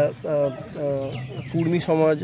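Speech: a man talking in Bengali.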